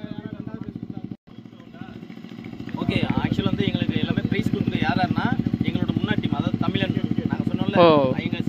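A small engine idling steadily with a fast, even pulse, under a man talking. The sound cuts out briefly about a second in, then comes back louder.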